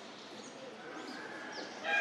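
Faint outdoor background with a few short, high chirps of small birds, then near the end a loud, drawn-out animal call starts suddenly.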